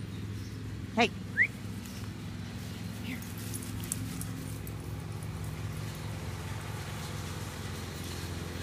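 A person calls a short, high "hey" about a second in, followed at once by a brief rising squeak. A steady low hum runs underneath throughout.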